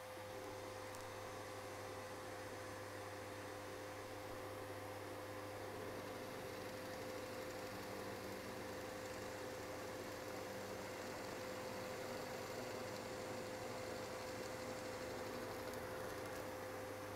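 Faint, steady hum of a Parkside benchtop drill press and a vacuum running for dust extraction, as a Forstner bit bores into a wooden board.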